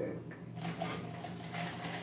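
Quiet studio room tone with a steady low electrical hum, plus faint rustles and small clicks of a paper napkin being handled and laid over a cup.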